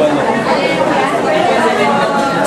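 Indistinct chatter of many people talking at once, steady throughout, with no single voice standing out.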